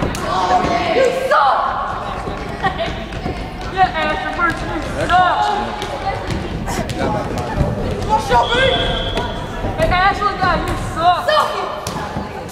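Voices calling and chattering in an echoing school gymnasium during a volleyball game, with a few sharp thumps of the ball being hit or bouncing on the floor.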